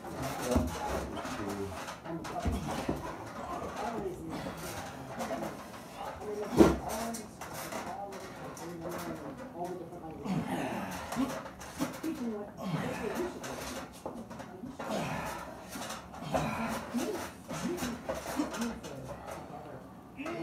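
Low, indistinct men's voices while two men arm wrestle at a table, with a single sharp thump about six and a half seconds in.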